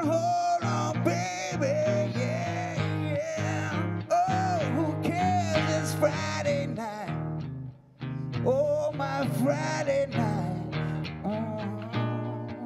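Blues instrumental break: a harmonica plays a bending lead melody over a strummed acoustic guitar, with a brief pause about two-thirds of the way through.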